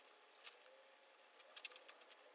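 Near silence: room tone with a few faint ticks and rustles.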